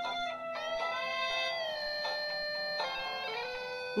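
Oreo DJ Mixer toy playing a track in an electric-guitar style, chosen by its music box add-on, with long held notes shifting pitch every second or so at a steady level.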